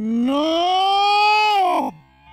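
A person's long, loud, drawn-out yell. It rises in pitch, holds, then falls away and stops near the end.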